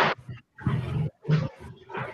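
A dog barking in the background, three short rough barks.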